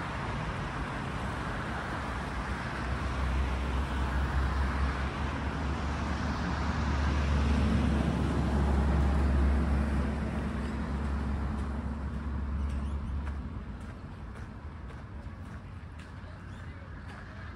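Road traffic passing alongside, with one vehicle's low engine rumble swelling over several seconds, loudest a little past the middle, then fading away near the end.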